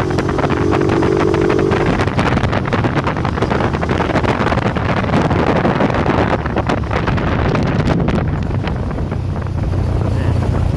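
Motorcycle engine running while riding, with heavy wind buffeting on the microphone; a steadier, higher drone sits over the engine for the first two seconds.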